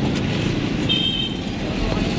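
Steady background road-traffic noise, with a brief high-pitched chirp about a second in.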